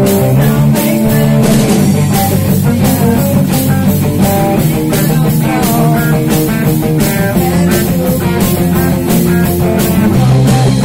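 Rock band playing loud and steady: a drum kit keeps a regular beat under a bass guitar and two electric guitars, with no vocals.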